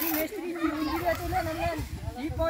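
People's voices talking, a high-pitched voice among them; no other sound stands out.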